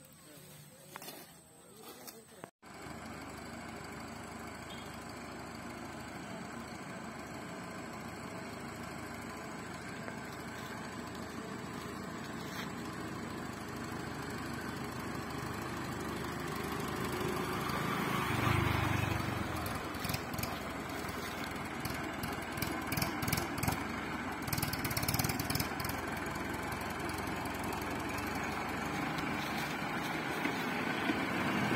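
Mahindra 605 Arjun tractor's diesel engine running steadily as it pulls a heavy sugarcane load, growing gradually louder as the tractor approaches.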